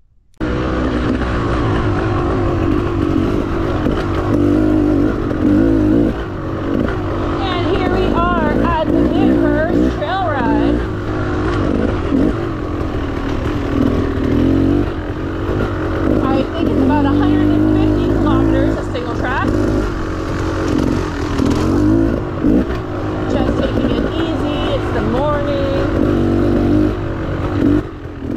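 Beta Xtrainer 300 two-stroke enduro dirt bike engine heard close up from on board while riding, its revs rising and falling continuously as the rider works the throttle.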